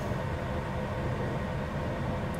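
Steady low rumble and hum inside a car's cabin, with a faint steady whine over it.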